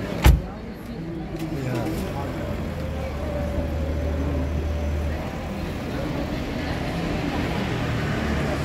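A car door slams shut with one loud thump just after the start, followed by a low, steady engine hum for a few seconds amid street noise.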